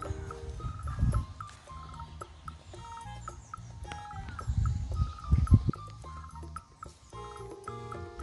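Light background music with short, evenly stepping notes, over a few low rumbling thumps, the loudest about five and a half seconds in.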